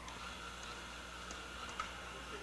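Stand mixer running steadily, kneading enriched bread dough toward the windowpane stage: a faint, even motor whine with a few light ticks.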